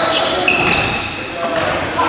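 Live basketball play on a hardwood gym court: sneakers squeak in short, high-pitched chirps and the ball bounces, with players' voices.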